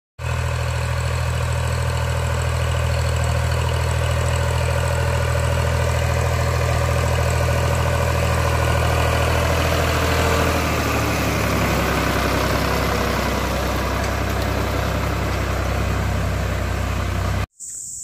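Ford 3600 tractor's three-cylinder diesel engine running steadily as the tractor drives across tilled ground. Its note shifts a little about ten seconds in, and the sound cuts off suddenly just before the end.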